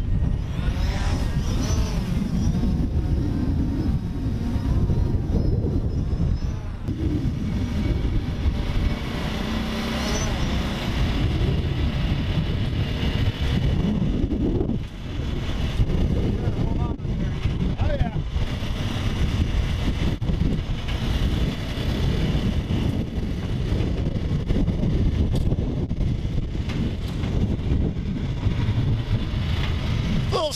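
Gravely Atlas utility vehicle's engine running as it drives over a rough field track, with a steady rumble and pitch that rises and falls with the throttle.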